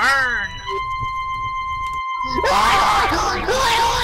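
A voice gives a short falling scream, then a held organ-like chord sounds. From a little past halfway, a voice screams in rising and falling wails over the music.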